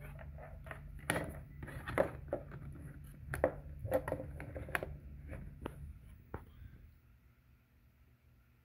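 Plastic clicks and knocks as a wall charger plug is handled and pushed into a plug-in power meter's socket: a dozen or so sharp ticks over the first six seconds, over a low steady hum.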